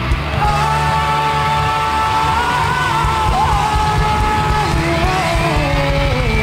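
Live rock band playing: drums and cymbals, bass and electric guitars, with long held notes that bend now and then.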